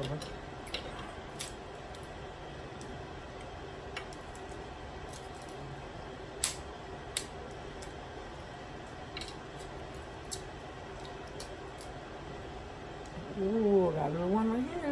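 Snow crab and shrimp shells being cracked and picked apart by hand: scattered small sharp snaps and clicks, the loudest about six and a half seconds in, over a steady low room hum.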